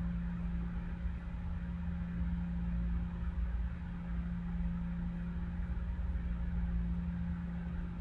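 A steady low hum with a faint background hiss, unchanging throughout, with no distinct events.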